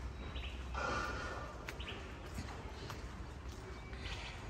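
Birds calling: a few short chirps, with one louder call about a second in, over a low steady rumble of outdoor air.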